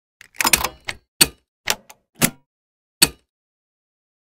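A run of sharp clacks and knocks, a quick cluster followed by single hits at uneven spacing, the last about three seconds in and the loudest.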